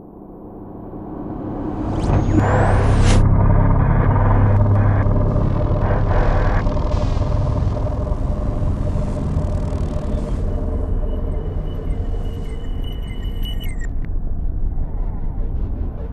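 Synthesized electronic drone: a low rumble swells up over the first two seconds and holds, layered with glitchy shifting tones, a rising pitch glide a couple of seconds in, and a high steady whine from about ten seconds that cuts off suddenly near fourteen seconds.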